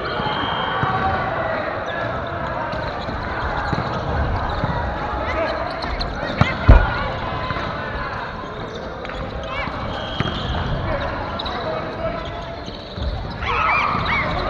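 Volleyball being played in a gymnasium: a steady din of players' voices and calls, with the thuds of the ball being struck. One loud, sharp smack of the ball comes about six and a half seconds in.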